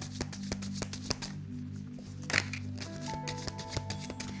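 A deck of tarot cards being shuffled by hand, a quick irregular patter of card clicks, over soft background music with sustained notes.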